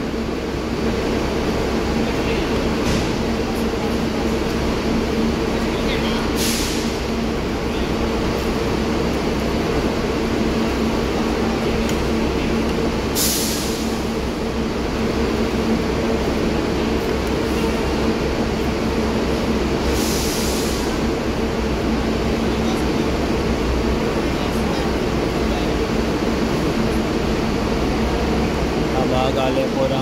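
A parked coach bus idling: a steady engine and air-conditioning hum with a low two-note drone, broken by three short hisses of compressed air from the bus's air system, roughly seven seconds apart.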